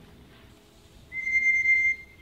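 One steady high-pitched electronic beep, about a second long, starting about halfway through: the loft's electronic pigeon timing system registering a racing pigeon's arrival at the trap.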